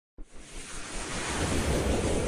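Rushing whoosh sound effect of an animated logo intro, starting suddenly and swelling steadily louder.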